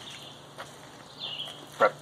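A pause in a man's speech, with only faint outdoor background, a steady low hum and one small click. He starts speaking again near the end.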